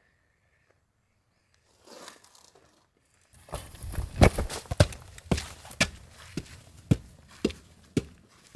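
Footsteps on stone steps, a man climbing a flight of outdoor stone stairs at about two steps a second. They start a few seconds in, are loudest at first and then fade as he goes up.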